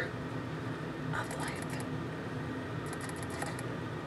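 Quiet room tone with a steady low hum, broken by two brief spells of faint rustling, about a second in and again near three seconds in.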